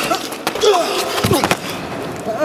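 Staged fist-fight sounds: a few sharp blows and a heavier thud about a second and a half in, with short grunts and pained cries between them as one man is beaten to the floor.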